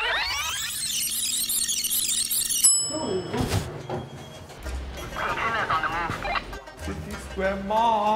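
Videotape rewind sound effect: a fast, warbling high squeal of rushing sped-up audio for nearly three seconds that cuts off abruptly, followed by background music and voices.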